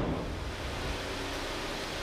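Steady low hum under an even hiss: the Santa Fe's 2.4-litre GDI four-cylinder idling with the hood shut.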